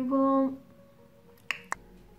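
A short hummed "mm-hm" in a woman's voice at the start, then two sharp clicks about a fifth of a second apart, a second and a half in.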